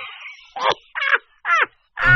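A bird calling three times, each short call falling in pitch, about half a second apart.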